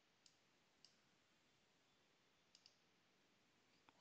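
Faint computer mouse clicks in near silence: one click early, another a little under a second in, a quick double click past the middle, and one more just before the end.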